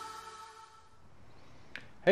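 The last notes of the intro music fading out over about a second, then a faint quiet stretch with a single sharp click near the end.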